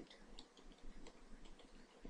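Faint computer keyboard keystrokes, quick irregular clicks several a second as text is typed.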